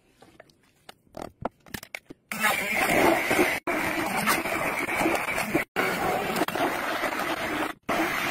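Immersion blender running in a crock pot of soft-cooked apples, churning them into a smooth puree. It starts about two seconds in, after a few light knocks, and cuts out briefly three times.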